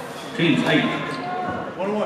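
People's voices in a gymnasium, two stretches of talk or calling out, made hollow by the echo of the hall.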